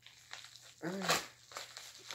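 A plastic bubble mailer crinkling and rustling in the hands as it is handled and opened, with a brief spoken word about a second in.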